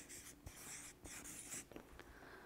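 Felt-tip marker writing a word on flip-chart paper: faint scratchy strokes in several short runs over the first second and a half, then stopping.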